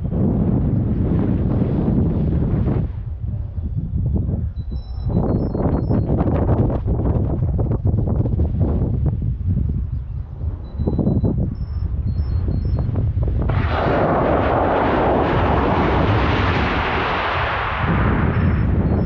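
Wind buffeting and rushing over an onboard rocket camera's microphone in flight, a heavy gusty rumble that swells into a louder rushing hiss for the last few seconds. Small groups of short, high electronic beeps, one longer beep then several quick ones, repeat about every seven seconds, typical of the rocket's flight electronics beeping.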